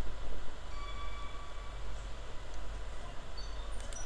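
Steady low background hum with faint hiss, with a few faint, brief high tones about a second or two in.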